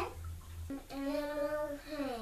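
A young child's voice drawing out one long vowel in a sing-song way, starting just under a second in and falling away at the end.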